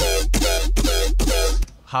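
Dubstep wobble bass patch from the Cymatics Outbreak soundbank played in the Xfer Serum synthesizer through a flange-type filter: a pulsing, wobbling upper layer over a steady deep sub. It cuts off suddenly about a second and a half in.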